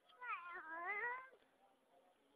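A single drawn-out meow-like animal call, about a second long, its pitch dipping and then rising again.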